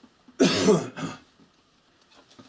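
A man coughing: one loud, rough cough about half a second in, followed at once by a shorter, weaker one.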